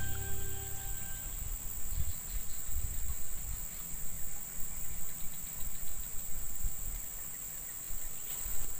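Insects droning steadily at one high pitch in the marsh vegetation, over an uneven low rumble.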